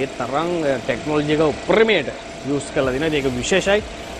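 A man talking throughout, over a faint steady hum.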